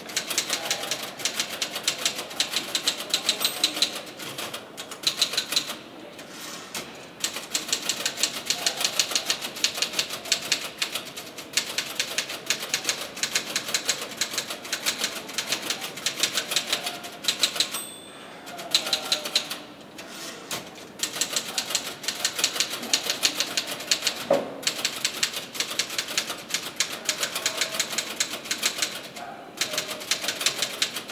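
Fast typing on a keyboard: keystrokes click in quick, dense runs, broken by a few short pauses.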